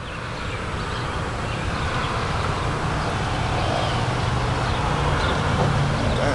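A vehicle engine running close by with a steady low rumble, growing gradually louder as it nears.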